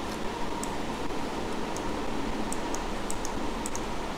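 Steady background hiss and hum, like a fan or room noise, with a faint steady tone and about a dozen faint, short, high ticks scattered through it.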